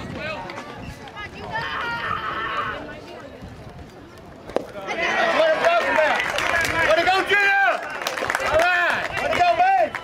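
A bat strikes the ball in one sharp crack about four and a half seconds in, then spectators break into loud shouting and cheering that lasts to the end.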